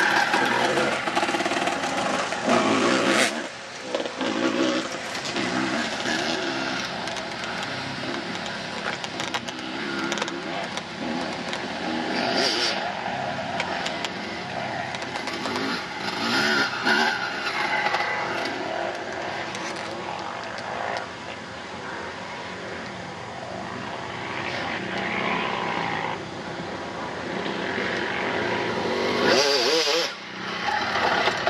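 Motocross dirt bike engines riding the track, revving up and down repeatedly as the riders work the throttle through turns and jumps; the bikes are louder near the start and again near the end as they come close.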